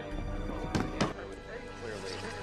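Two sharp clicks about a quarter second apart, about a second in: the metal latches of a hard briefcase snapping open, over a tense film score.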